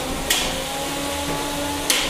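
Two sharp hits from 3 lb combat robots' spinning drum weapons striking each other, about a second and a half apart, over a steady whine of the spinning drums.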